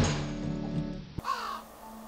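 Strummed guitar music ends on a loud final strum that rings out and fades. About a second in, a single short crow caw.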